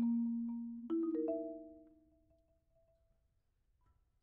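Solo Marimba One concert marimba played with four mallets: a low note rings on as a fast passage ends, then about a second in a quick upward spread of three notes rings and dies away. A pause of near silence follows, broken by one faint soft note near the end.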